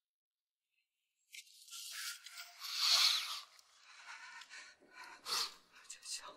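A man sniffing the air, with one long drawn-in sniff about three seconds in and a short sniff near the end.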